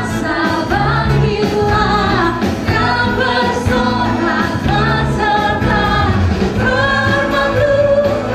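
A worship team of male and female voices singing a praise song together, with a live band of acoustic guitar, bass guitar and drums.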